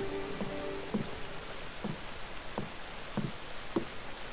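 Slow footsteps on wooden boards, about six soft thuds spaced a little over half a second apart, over a faint steady hiss of falling water. A held music cue ends just as the steps begin.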